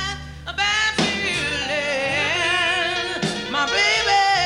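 A woman singing blues with a live band, holding long notes with wide vibrato over a steady bass line. After a brief break in her line just after the start, she holds one long note and rises in pitch near the end.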